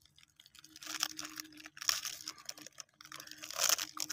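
Plastic biscuit packet being torn open and crinkled as biscuits are pulled out of it, in a few separate bursts of crackling.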